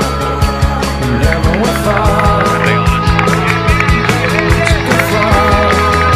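Background music with a steady drum beat.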